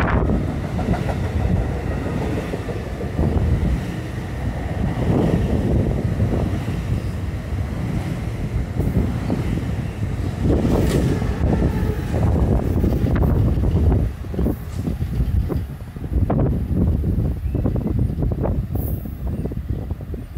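NJ Transit Multilevel passenger cars rolling slowly past close by: a steady rumble of wheels on rail with repeated clicks as the wheels cross rail joints.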